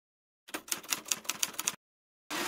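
Typewriter sound effect: a quick run of about eight key clacks over a little more than a second, starting about half a second in.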